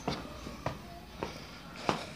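Footsteps, a soft knock about every two-thirds of a second, over a low steady hum.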